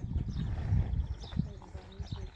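Indistinct voices over a low rumble, easing off near the end.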